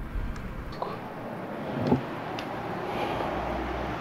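Footsteps and a few light knocks and creaks on old, rotten wooden floorboards, over a low rumble of wind or handling on the camera microphone.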